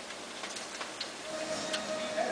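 A bacon weave sizzling on a sheet pan in the oven: a steady hiss with scattered crackling pops. A steady tone comes in about two-thirds of the way through.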